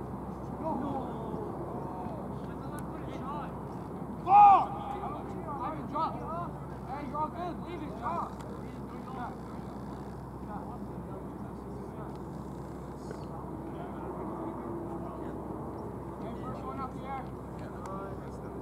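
Young men's voices calling out across an open sports field over steady background noise, with one loud, short shout about four seconds in.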